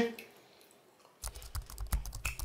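Computer keyboard typing sound effect: a quick run of key clicks starting a little over a second in.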